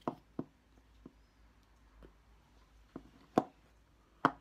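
Faint, short mouth clicks and lip pops of a man puffing on a tobacco pipe: about six scattered clicks, the loudest shortly before the end.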